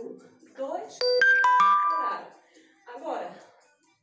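A quick run of about four bright chime notes struck one after another about a second in, each ringing on for up to a second; this is the loudest sound here. Faint snatches of a voice come before and after it.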